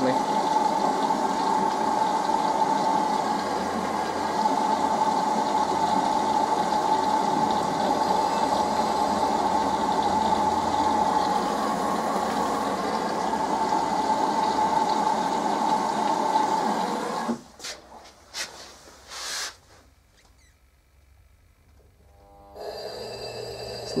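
LG F1029SDR washing machine's direct-drive inverter motor straining against a jam, giving a steady, unpleasant whining drone as the drum barely turns. It is a sign of a motor lock, which the repairer links to an LE/CE error from a seizing motor or a failed Hall sensor or control module. The drone cuts off suddenly about 17 seconds in, a few clicks follow, and a faint hum starts again near the end.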